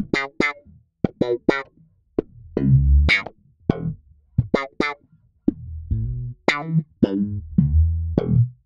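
Slap bass on a Fender Mustang PJ bass played through a DOD FX25 envelope filter: short, sharply struck slapped and popped notes in a funky phrase, each note swept by the auto-wah filter, with brief gaps between phrases.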